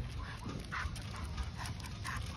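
American Pit Bull Terrier on a leash making several faint, short high-pitched sounds, over a steady low rumble from the walk.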